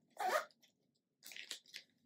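Candy packaging rustling and crinkling as it is handled, in a few short bursts: one just after the start and a quick cluster of crackles past the middle.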